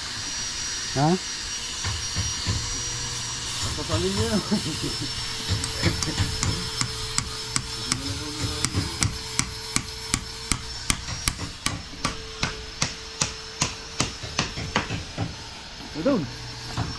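A steady series of sharp hammer strikes, about two to three a second, starting about four seconds in and keeping on to the end, with faint voices in the background.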